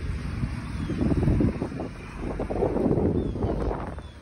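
Wind buffeting the phone's microphone: a rumbling noise that swells twice.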